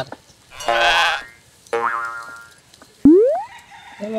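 Cartoon-style comedy sound effects: two short sounds that each hold one pitch, then about three seconds in a loud, quick rising 'boing' glide.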